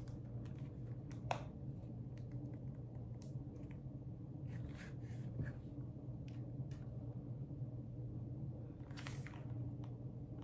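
Faint handling sounds, a few soft clicks and rustles, over a steady low room hum.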